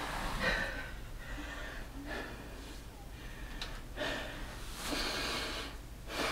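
A man breathing hard through several deep breaths, about one a second, catching his breath after a set of push-ups.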